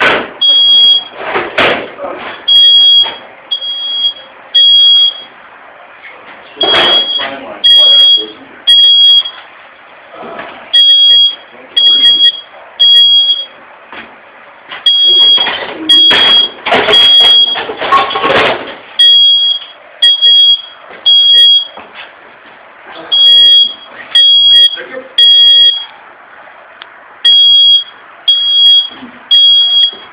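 Electronic alarm sounding a high, steady beep in groups of three, about a second apart, with a short pause between groups, the three-beep pattern used by smoke and fire alarms.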